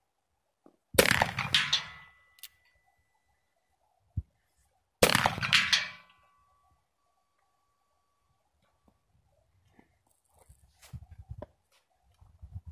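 Two shots from a black-powder percussion revolver, about four seconds apart, each a sharp report with a short decaying echo and a thin ringing tone trailing after it. A single click falls between the shots, and faint handling clicks come near the end.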